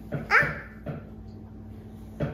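A toddler's short, high squeal that rises in pitch, about a third of a second in, followed by a brief second little vocal sound.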